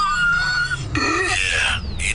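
High-pitched laughter: a held, squealing laugh in the first second, then a second burst.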